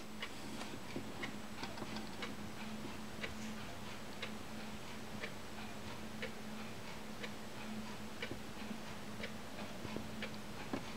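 Record player stylus riding the run-out groove of a spinning 45 rpm vinyl single after the song has ended: faint regular clicks about once a second over surface hiss and a steady low hum.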